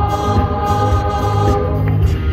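Gospel music: a woman singing into a microphone over an accompaniment with choir-like backing, holding long notes over a steady bass.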